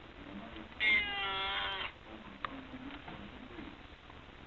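A domestic cat meowing once: a single drawn-out meow lasting about a second, starting about a second in and dropping slightly in pitch at its end.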